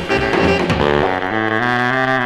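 Saxophone and brass of a 1956 swing-style rock and roll band record playing an instrumental fill between vocal lines: a run of short notes, then a long held note from a little past halfway.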